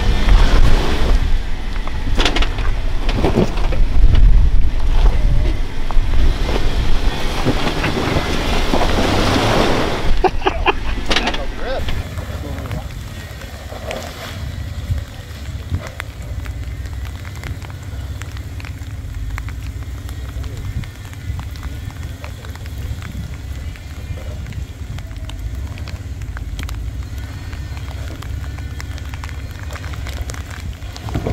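Jeep Wrangler JKU engine working hard with its tyres slipping on a wet, muddy rock, the Jeep sliding rather than climbing: too slippery to get up. After about twelve seconds the sound drops to a fainter, steady low rumble.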